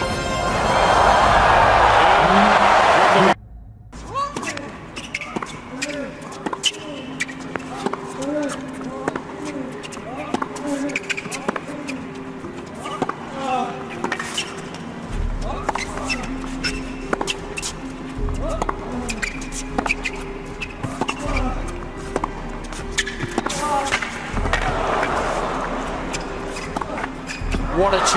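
Crowd noise that cuts off abruptly about three seconds in, then a tennis rally on a hard court: repeated ball strikes and short shoe squeaks. These sit under background music with held tones and, from about halfway, a slow bass pulse. Crowd noise swells again near the end.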